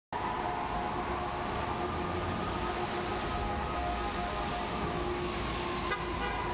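Steady city street traffic noise, a continuous low rumble with a faint held hum over it.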